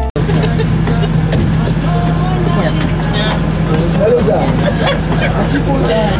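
Inside a moving minibus: the engine's steady low drone with road noise, and people's voices talking over it.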